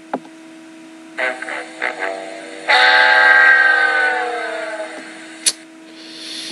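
Short musical sound effect played back: a few quick notes, then one long note that slides slowly down in pitch and fades, a sad-trombone style 'wah, wah' for a loss. A sharp click near the end, over a steady hum.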